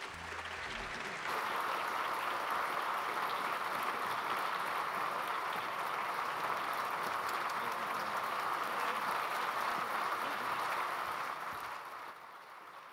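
Audience applauding, a dense steady clapping that swells about a second in and fades away near the end.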